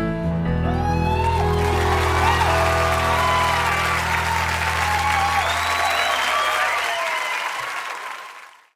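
A live concert audience applauding, cheering and whistling as the song's last low note rings on underneath. The note dies away about seven seconds in, and the applause fades out at the end.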